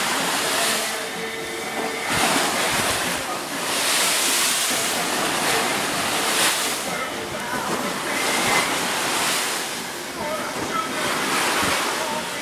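Rough sea breaking against a motor boat's hull: waves and spray rush along the side in repeated surges every second or two, with wind on the microphone.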